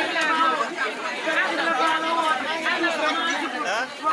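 Women talking and calling out loudly through handheld megaphones, voices overlapping with crowd chatter behind.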